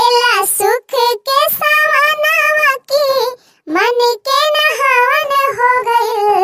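A high-pitched voice singing an unaccompanied Hindi folk-style birthday congratulation song (badhai geet), in short melodic phrases with brief pauses between them.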